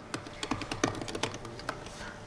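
Typing on a computer keyboard: an irregular run of quick keystroke clicks, several a second.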